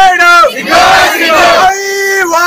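A young man shouts a protest slogan and a crowd of students shouts the reply back together, in call-and-response slogan chanting; near the end his single voice starts the next call.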